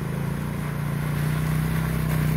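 ATV engine running steadily at low revs while the quad works through deep mud. The pitch holds even and the sound grows slightly louder toward the end.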